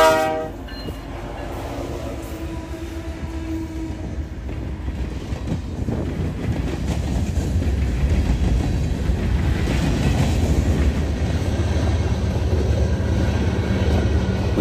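A Canadian Pacific freight train passing close by: its horn cuts off just as it begins, then the cars roll past with a steady rumble and clatter of wheels on the rails, growing a little louder.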